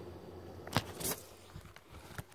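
Two faint handling clicks close together about a second in, as a phone filming the room is grabbed and lifted, over a low steady hum.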